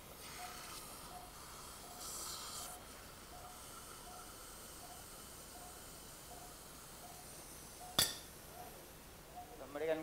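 Operating-theatre patient monitor giving a faint short pulse beep about every 0.6 seconds over a steady hiss. A brief burst of higher hiss comes around two seconds in, and a single sharp click, the loudest sound, about eight seconds in.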